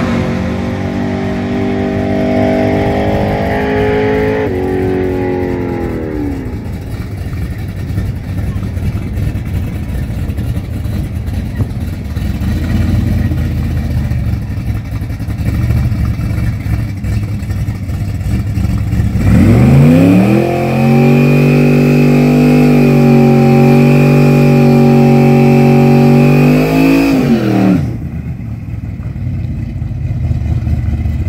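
Carbureted Chevy 350 small-block V8 with a big cam: revs held and dropping back about five seconds in, then a low rumble. Near the end it climbs to high revs and holds there for about seven seconds in a burnout before dropping back sharply.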